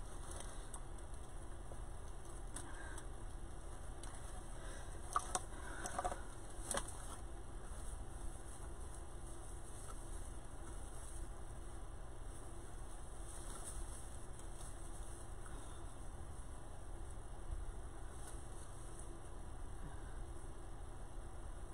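Hands handling a wreath of deco mesh and tinsel branches, with soft rustles and a few light clicks a few seconds in, over a steady low hum.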